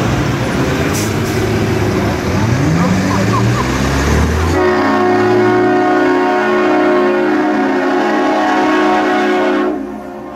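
Vehicles passing with an engine revving up, then about halfway through a loud multi-note train-style air horn sounds, held steadily for about five seconds and cut off abruptly near the end.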